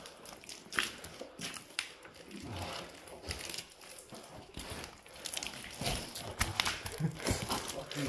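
Footsteps scuffing and crunching over loose dirt and rubble, with clothing and gear rustling close to the microphone: an irregular run of small clicks and crackles.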